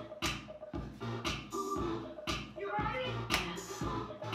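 Upbeat dance music with a steady beat, about two beats a second, playing for a dance workout.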